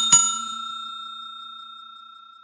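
Notification-bell 'ding' sound effect: a bell struck twice in quick succession, then ringing on one clear tone and fading out slowly over about two and a half seconds.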